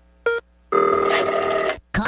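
Telephone ring sound effect: a short electronic blip, then a steady ring lasting about a second.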